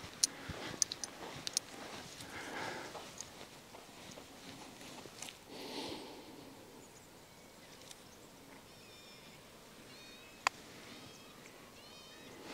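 A single sharp click of a putter striking a golf ball, about a second and a half before the end, over quiet outdoor ambience with faint bird chirps.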